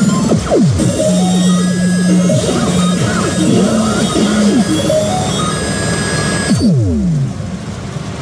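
Pachinko machine playing its electronic presentation music and effects: a busy mix of held tones and many falling glides. Near the end a cluster of deep falling sweeps comes as the higher sounds drop out.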